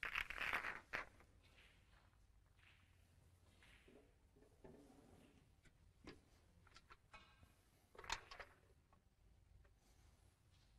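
Faint, scattered clicks and rustles in a quiet room: a short flurry of clicks and rustling at the start, a single sharp click about six seconds in, and a few more clicks just after eight seconds, over a low hum.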